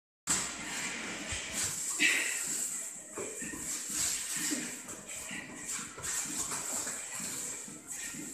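People doing burpees: hard breathing and short grunts mixed with irregular soft thuds of hands and feet landing on rubber gym floor mats, over a faint steady high whine.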